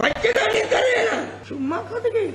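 Speech only: a man talking without pause.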